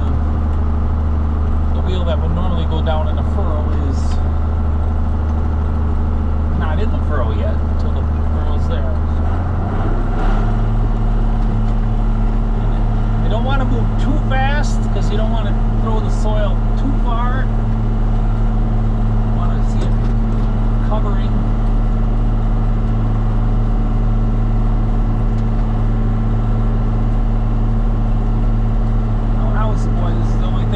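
John Deere 7810 tractor's six-cylinder diesel engine running steadily under load while pulling a five-bottom moldboard plow. Its tone shifts about ten seconds in.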